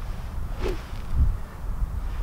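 Wind buffeting the microphone, a steady low rumble, with one faint brief brush of sound a little past half a second in.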